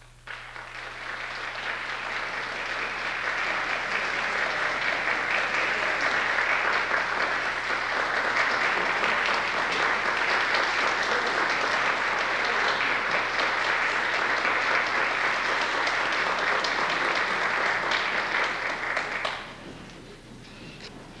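Audience applauding at the end of a concert band piece, swelling over the first few seconds, holding steady, then dying away near the end.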